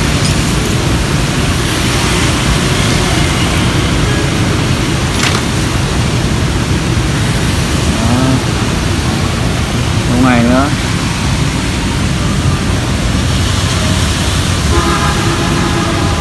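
Steady heavy rain, a loud even hiss with no let-up, with short voices heard in the background about eight and ten seconds in.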